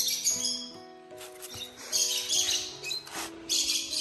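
Background music with sustained notes, over which a lovebird gives three short bursts of shrill chirping, at the start, about two seconds in and near the end.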